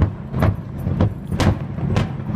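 Aerial fireworks shells bursting: several sharp bangs, the loudest about one and a half seconds in, over a steady low rumble.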